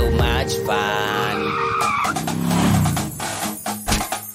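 Children's song music, giving way about halfway through to a cartoon car sound effect: a toy car's engine revving up and back down.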